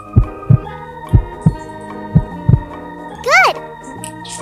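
Heartbeat sound effect: three double lub-dub beats, about one pair a second. Near the end comes a short pitched sound effect that rises and falls.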